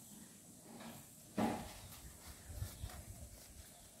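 Banana leaves rustling and crackling as they are folded around a tamal, with one sharper, louder crackle about a second and a half in.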